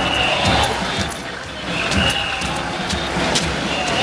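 Street traffic noise from police motor scooters riding slowly alongside, with their engines running low underneath. Voices sound in the background, and a short high tone sounds three times, about two seconds apart.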